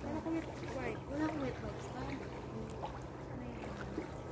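Women's voices talking casually, over a steady low rumble.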